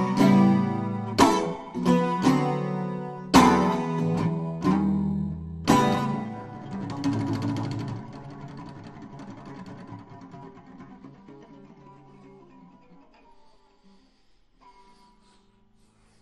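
Acoustic guitar strummed in about six chords, roughly one a second, closing a song; the last chord is left to ring and fades out slowly over several seconds until it is almost gone.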